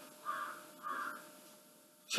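A crow cawing faintly in the background, about two caws half a second apart, over faint room hiss and a steady hum; the sound cuts off suddenly near the end.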